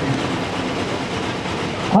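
Steady hubbub of a large outdoor crowd, an even rushing noise with faint voices in it.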